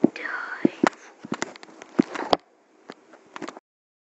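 A person's breathy mouth noises, with a run of sharp clicks and pops and one sliding sound that dips and rises near the start. It cuts off abruptly near the end.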